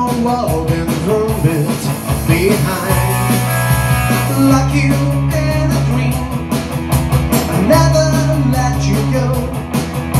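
Electric guitar strummed in a steady punk-rock rhythm, with a man singing into a microphone.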